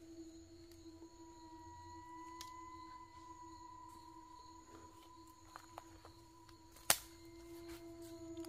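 Eerie, steady ringing tones: a low tone throughout, joined about a second in by a higher tone that holds until it cuts off with a single sharp click near the end.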